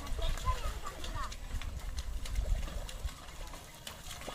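A pair of bullocks hauling a loaded cart on a muddy track: a string of short knocks and clatters from hooves and cart over a low rumble, with faint voices.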